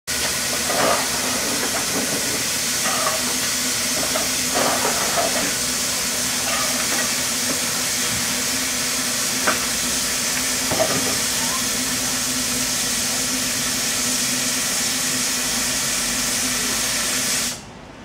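Small steam tank locomotive 'Långshyttan' venting steam in a loud, steady hiss, with a low steady hum beneath and a few sharp metal clinks from work on the motion. The hiss cuts off suddenly near the end.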